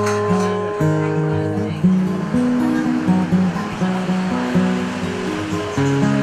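Instrumental background music: a melody and chords in sustained notes that change every half second or so.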